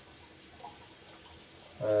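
Tap water running steadily into a bathroom sink, low and even, with a brief spoken "uh" near the end.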